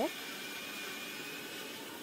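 Steady hiss of a pot of rice, garlic and water heating on a lit gas stove burner.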